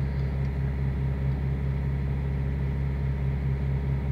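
A steady low mechanical hum, even and unchanging, with nothing else happening over it.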